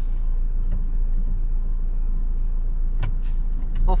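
Car engine idling while stationary, heard from inside the cabin as a steady low rumble. Several sharp clicks come in the last second.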